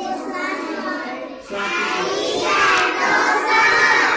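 A class of young children speaking together, many voices at once, louder from about halfway through.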